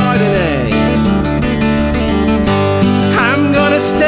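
Acoustic blues music: fingerpicked acoustic guitar over a steady bass line, with notes that slide and bend.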